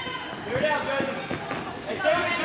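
Background shouting and calling of players and spectators in a large indoor soccer arena, with a few thuds from the ball or feet on the turf.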